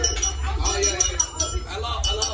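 Tableware clinking: a quick, uneven run of ringing clinks as plates and utensils are handled, over the chatter of diners.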